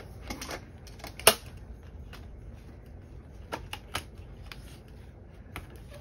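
Envelopes being fitted onto the metal rings of a binder: light rustling with a few sharp clicks, the loudest about a second in, more near the middle and end.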